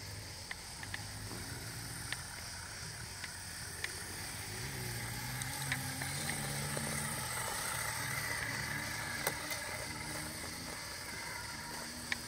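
Small electric motor and gear drivetrain of an RC scale crawler whining as it crawls, the pitch rising and falling with the throttle, with scattered small clicks and ticks.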